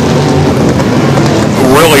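A field of figure-8 stock cars running on the track: a loud, steady blend of engine drone and noise. A commentator's voice comes in near the end.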